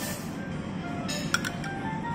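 A metal spoon clinking a few times against a ceramic curry bowl, about a second in, over steady background music.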